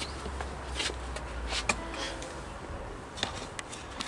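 A few light knocks, clicks and rustles of someone moving about and handling things, over a steady low hum.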